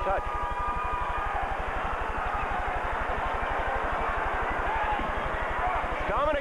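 Steady crowd noise of many voices in a basketball arena during live play, over a constant low hum in the old broadcast recording.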